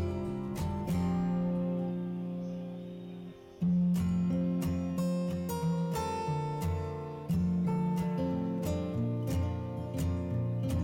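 Background music on acoustic guitar, plucked and strummed notes in a steady rhythm, with a short quiet moment a little after three seconds before a strong strum.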